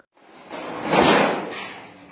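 Corrugated metal sheet being slid and moved, a scraping rush of noise that swells to a peak about a second in and then fades.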